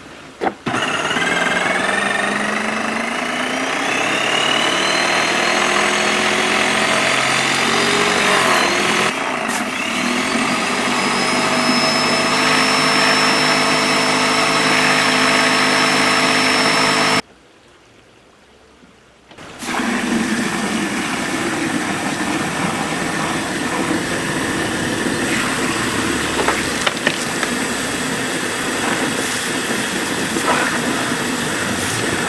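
Graco Magnum X5 airless sprayer's electric pump running as water is flushed through the spray gun into a bucket, its whine rising in pitch over the first several seconds and then holding steady, with the hiss of the water jet. It cuts out suddenly for about two seconds past the middle, then runs again.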